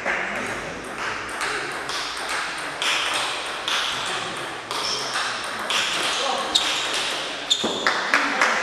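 A table tennis rally: the ball clicking sharply off the bats and the table, about one hit a second, ending when the point is over.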